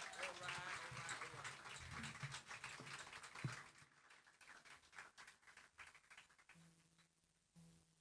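Small audience clapping and calling out between songs, dying away over the first few seconds. Near the end a guitar plays a few quiet held notes.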